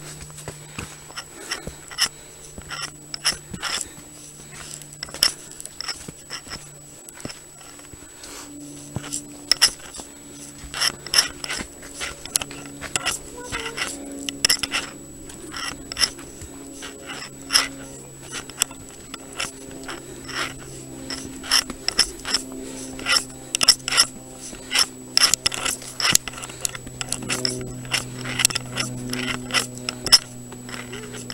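Footsteps climbing stone and wooden trail steps, an uneven run of sharp knocks and scuffs, over a low steady hum that drifts slowly in pitch.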